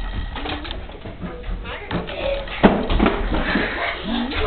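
Voices in a room, soft babble and talk that the speech recogniser did not catch, with one sharp knock a little past halfway.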